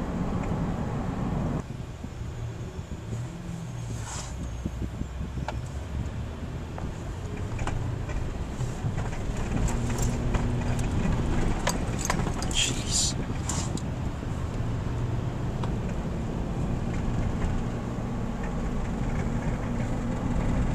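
Car interior road noise while driving: the engine and tyres drone steadily, heard from inside the cabin, with a few light clicks and rattles.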